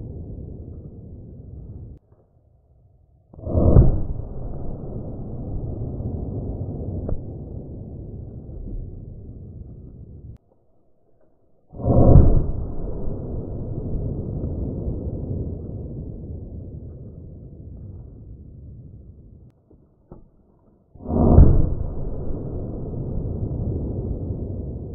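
Three gunshots from a Ruger LCR revolver in .32 H&R Magnum, about nine seconds apart, played back slowed down. Each is a deep, dull boom followed by a long, drawn-out rumble that fades slowly.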